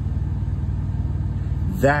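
Car engine idling, a steady low rumble heard inside the cabin.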